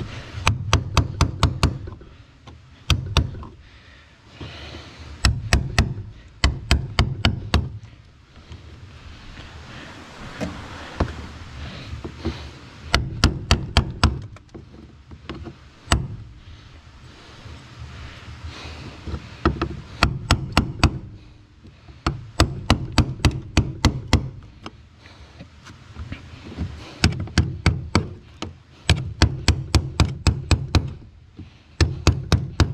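Club hammer striking a cold chisel that is cutting through a car's sheet-metal floor pan, in quick runs of several sharp blows, about five a second, separated by short pauses.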